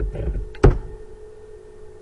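A few computer keyboard keystrokes, the loudest about two-thirds of a second in, over a steady hum.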